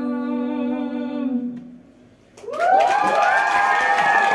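A woman's voice holds the song's last sung note, which fades out over the first second and a half. After a brief hush, an audience breaks into loud applause with cheers and whoops about two and a half seconds in.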